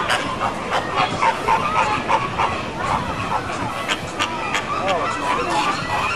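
A flock of flamingos honking and gabbling, many short calls overlapping one another.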